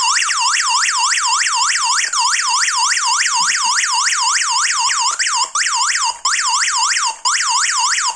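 Built-in siren of a Digoo HAMB PG-107 alarm panel sounding its SOS panic alarm. It is a loud, fast warble that sweeps down and up in pitch about four times a second, drops out briefly a few times in its second half, and cuts off suddenly at the end.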